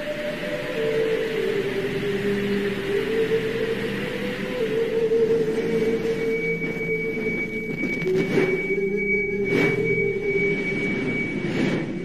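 Ambient new-age music: sustained synthesizer pad notes that shift slowly in pitch. A thin, high held tone joins about halfway through, and two brief swells come near the end.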